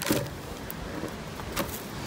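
A plastic bag of carrots crinkling as a carrot is pulled out, with short rustles near the start and again about one and a half seconds in, over a steady background noise.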